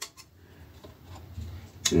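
Jeweler's side cutters snipping plastic model-kit parts off the sprue: a few sharp clicks, the loudest near the end.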